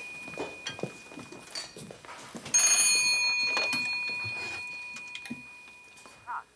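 Early candlestick telephone's electric bell ringing: a fading ring, a few soft knocks, then a loud burst of ringing about two and a half seconds in that rattles for under a second and then fades away slowly.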